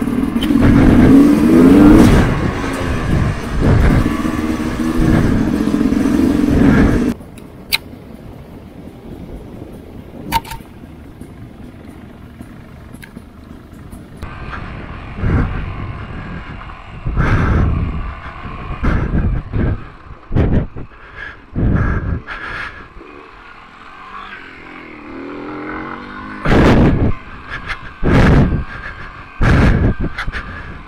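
Sherco 300 two-stroke enduro motorcycle engine revving and pulling as it rides, heard close to the rider's camera. It is loud and rising and falling in pitch for the first seven seconds, then drops off suddenly to a quieter running. From about fifteen seconds on, a run of short loud thumps comes over the engine.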